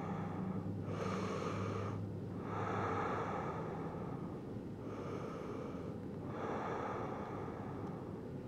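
A woman breathing slowly and softly while resting face down, with four long breaths heard about a second apart.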